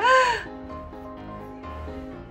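A single crow's caw used as a comic sound effect, one short call about half a second long at the start, rising then falling in pitch. Light background music with held notes continues under it.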